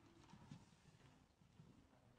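Near silence: quiet room hush with a few faint, soft knocks.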